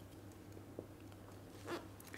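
Faint scrape and squeak of a felt-tip marker writing on a whiteboard, with a few light taps and a short stroke near the end, over a steady low hum.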